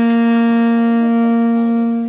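Saxophone holding one long, steady low note.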